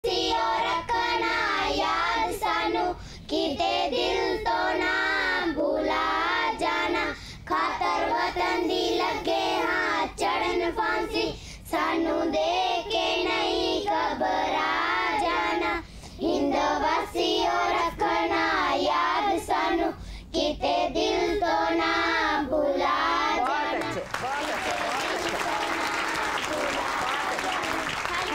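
A group of schoolchildren singing a song together into a microphone, in phrases with short breaks. About four seconds before the end the singing stops and applause begins.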